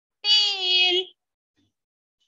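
A woman's voice holding one drawn-out word for about a second on a steady, slightly falling pitch.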